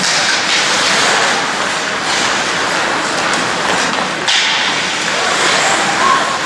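Ice hockey play on an indoor rink: a steady rushing hiss of skate blades on the ice, with a sharper scrape or knock about four seconds in.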